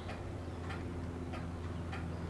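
Quiet shop room tone: a steady low hum with a few faint, light ticks spaced through it, as a dial test indicator is worked over a gauge pin in a steel V-block.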